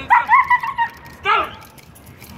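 Police dog whining high and drawn-out for most of the first second, then giving a short yelp that falls in pitch. It is excited, straining toward the decoy as it is sent in.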